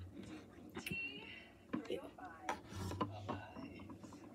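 Handling noise close to the microphone: a soft fleece blanket rubbing and several light knocks as items are put away.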